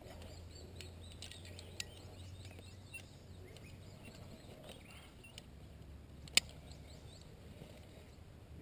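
Faint bird chirps repeating in the background over a low steady hum, with a sharp click about six seconds in.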